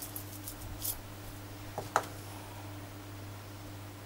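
Salt shaken from a small glass salt shaker over a tomato slice: a few faint light ticks in the first second, then a sharper click about two seconds in, over a steady low hum.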